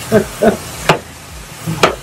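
Chicken sizzling in a hot frying pan while a wooden spoon stirs it, with two sharp knocks about a second apart. The pan is smoking and the chicken is scorching.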